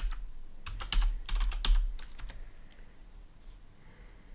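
Typing on a computer keyboard: a quick run of keystrokes over the first two seconds or so, then the typing stops.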